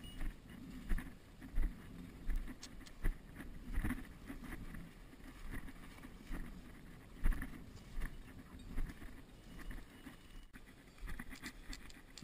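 Footsteps of a person walking through dry grass and brush, with stems and twigs rustling and scraping against clothing. There is a soft step about every 0.7 s.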